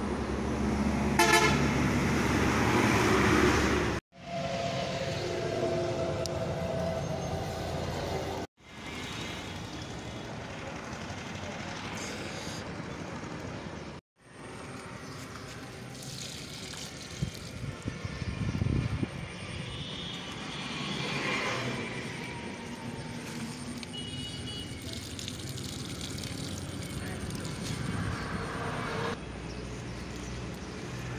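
Roadside traffic noise from passing vehicles, with a vehicle horn sounding loudly near the start. The sound breaks off and resumes several times as short clips are cut together.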